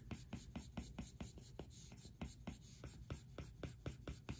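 Apple Pencil tip rubbing and ticking on an iPad's glass screen in quick back-and-forth smudging strokes, a faint click about five times a second.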